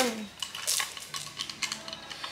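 Light clicks and rattles of sunglasses being picked up and handled, with a sharper clatter just under a second in.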